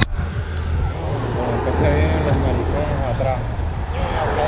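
Steady low wind rumble on the camera microphone, with people talking faintly underneath about halfway through.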